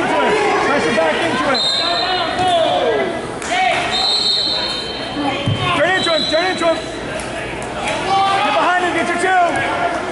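Crowd of spectators and coaches shouting over one another in a large gym during a wrestling bout, with several held high squeaks and a low thump about halfway through.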